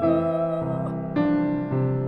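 Piano playing a classical accompaniment of quiet sustained chords, a new chord about every half second. A soprano's long held note with vibrato ends just as this begins.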